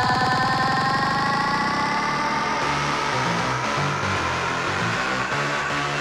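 Hardstyle electronic dance music from a DJ set over a loud sound system. A synth line rising in pitch carries on from a fast drum-roll build-up and fades over the first couple of seconds, leaving a choppy bass passage.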